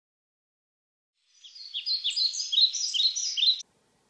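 Birds chirping in quick, repeated downward-sweeping chirps, about three a second, starting a little over a second in and cutting off suddenly shortly before the end.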